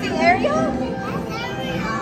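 Young children's high, excited voices and squeals, swooping up and down in pitch, with steady ride music underneath.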